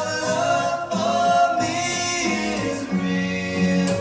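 A hymn sung by a voice over steady instrumental accompaniment.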